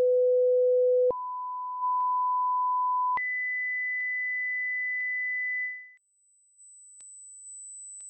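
Pure sine test tones from the HTC 10 Personal Audio Profile hearing test, stepping up in pitch three times: a low tone, a higher one about a second in, a higher one again about three seconds in, and a very high, faint tone from about six seconds in. Within each tone the loudness changes in small steps as the volume is adjusted with the plus and minus buttons.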